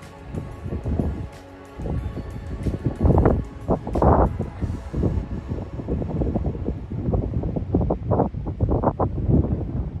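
Background music, with wind buffeting the microphone in uneven gusts.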